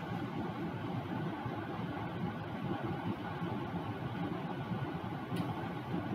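Steady noise of a room air conditioner running, an even hum and hiss with no distinct events.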